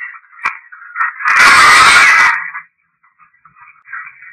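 Hiss and crackle played back through the small speaker of a Panasonic IC voice recorder: a couple of sharp clicks, then a loud burst of harsh noise lasting about a second that drops out to silence. The investigator takes the playback for a spirit voice saying "Michel".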